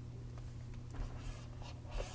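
Pen stylus scratching across a tablet surface in a few short strokes as a box is drawn, heard in the second half over a steady low electrical hum.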